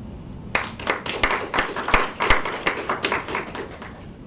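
Audience applauding: many separate hand claps that start about half a second in and die away near the end.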